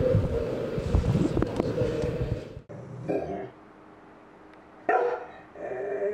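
A steady hum over noise cuts off suddenly about two and a half seconds in. A dog then gives a short bark about three seconds in, another sharp bark about five seconds in, and a longer whining call that bends up and down near the end.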